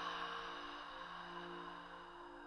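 A woman's long breath out through the open mouth, a breathy 'haa' that fades away over about two seconds: the deep yogic 'Ha' exhalation after a full in-breath. Soft ambient background music with held tones plays underneath.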